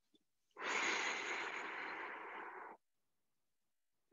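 A man's long breath out through the mouth, about two seconds, starting about half a second in and trailing off, from the effort of a fast high-knee march.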